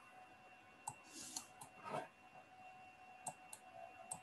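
Faint, scattered computer mouse clicks, five or six of them, with a couple of soft rustles, over a faint steady high-pitched tone.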